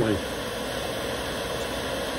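Hair dryer running steadily on low fan speed with the warm heat setting on. Its fan keeps its speed while the heater draws about 500 watts.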